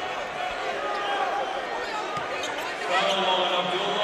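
Crowd in a basketball gym talking and calling out during a stoppage after a foul, with a few faint knocks of a basketball bouncing on the floor. A steady hum comes in near the end.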